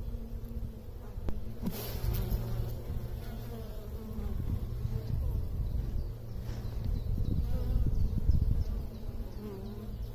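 Honeybees buzzing as a crowd on the comb of an open hive, a steady low hum that swells somewhat louder in the second half.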